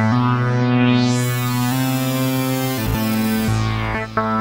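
Crisalys software synthesizer playing held notes through iZotope Trash distortion. The notes change pitch twice, and a filter sweeps the treble down and back up about a second in, then begins to close again near the end.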